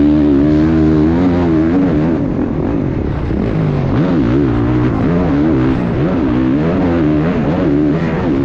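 Motocross bike engine heard from on board while racing, revving hard with its pitch rising and falling over and over as the throttle opens and shuts.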